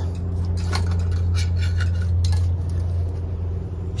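Light clinks and rustling as a hanging wood-slab orchid mount with moss is handled, over a steady low hum.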